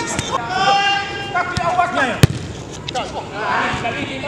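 Several men shouting on a football pitch, with the sharp thud of a football being kicked about two seconds in, the loudest sound, and a few lighter knocks.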